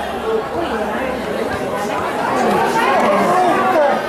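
Spectators' chatter: several people talking at once, overlapping so that no single voice stands out.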